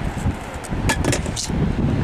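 Wind buffeting the microphone, a steady low rumble, with a few brief sharp sounds about a second in.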